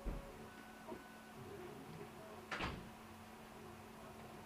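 Vector 3 3D printer at work, faint: its stepper motors give short whining tones that jump between pitches over a steady hum. There is a low thump at the start and a louder brief rasping knock about two and a half seconds in.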